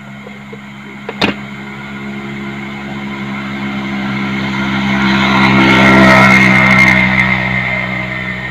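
A motor vehicle's engine drone, growing steadily louder to a peak about six seconds in and then easing off, as a vehicle passes by. A single sharp knock sounds about a second in.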